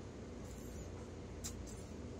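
Quiet room tone: a low steady hum with a few faint, brief noises about half a second in and again near the end.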